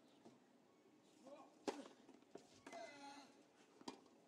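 Tennis ball struck by racket during a rally: two sharp hits about two seconds apart, the first louder, with a short voice sounding between them.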